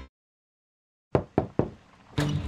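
Three quick knocks on a front door, about a quarter second apart, after a moment of silence.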